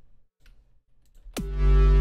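A few faint clicks, then about a second and a half in an electronic track starts playing back: a kick drum with a fast downward pitch drop under a loud, bass-heavy sustained synth chord.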